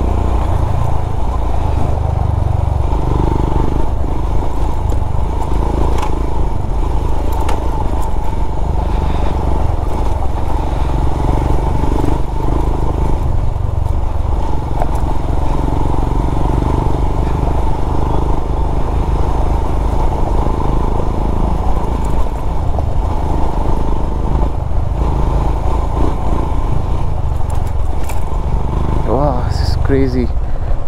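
Royal Enfield Himalayan BS6's 411 cc single-cylinder engine running steadily while ridden along a dirt trail, heard from the rider's position.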